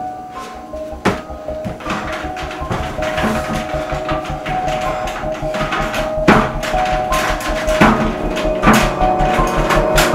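Background music of a film score: sustained held notes over a pulsing low beat, growing louder, with sharp percussive hits about a second in and several more in the second half.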